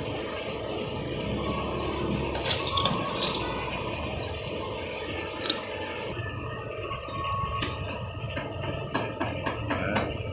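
Steady background noise of a small eatery, with a few short clinks of dishes and cutlery: two in the first half and several close together near the end.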